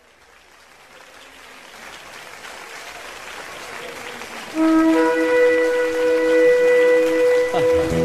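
Opening of a live worship recording: crowd and applause noise fades in and builds, then about four and a half seconds in a loud, sustained musical chord of held notes comes in abruptly.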